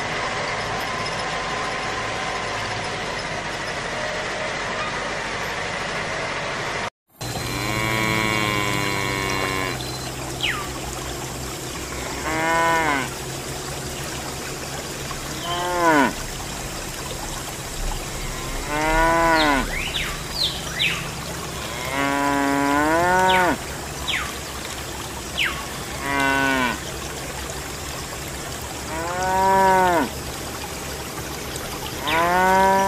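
Cattle mooing, about seven separate moos a few seconds apart, over a steady low hum. Before them, a steady mechanical drone cuts off abruptly.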